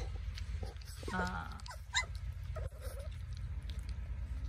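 Cane Corso puppies about four weeks old whimpering and squeaking, with one brief rising squeal about two seconds in, over a steady low hum.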